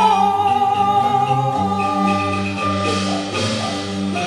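Cantonese opera music: the traditional accompaniment ensemble plays a passage between sung lines. A long held melody note at the start gives way to quick repeated struck notes over the lower parts.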